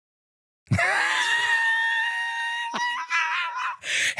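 A long, high-pitched scream that starts suddenly out of silence and is held for about three seconds, wavering slightly and breaking briefly with a click about two-thirds of the way through.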